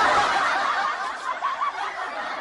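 Canned laughter, a group laughing together, loudest at the start and tapering off.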